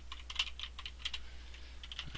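Typing on a computer keyboard: a quick, irregular run of keystrokes as a short phrase is typed, over a low steady hum.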